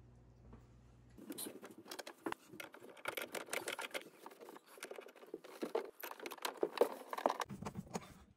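Close handling noise of hands working under a kitchen sink: rustling and a quick, uneven run of light clicks and knocks, starting about a second in, as a towel is laid around the water shutoff valves and supply lines.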